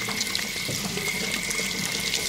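Tap water running steadily into a sink while hands are washed under the stream.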